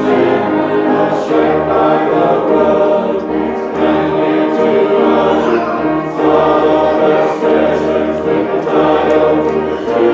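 A church hymn sung by many voices together, over low held accompaniment notes that change about once a second.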